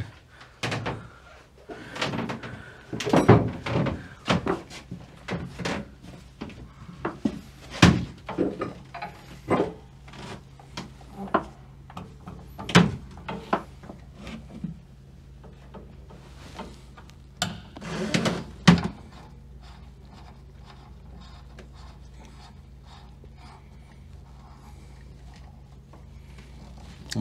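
Metal fittings and hand tools clinking and knocking as a compression fitting and ball valve are handled on a fuel tank: a string of sharp clanks and thunks for most of the first twenty seconds, over a steady low hum. The last several seconds hold only the hum.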